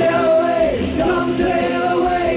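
Live rock band playing: a male lead singer sings into a handheld microphone over electric guitar and keyboard.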